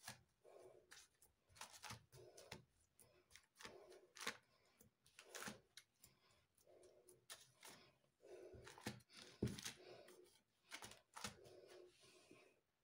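Near silence with faint, soft taps and light rustles a second or so apart: fingertips dimpling lagana flatbread dough in a roasting pan lined with baking paper.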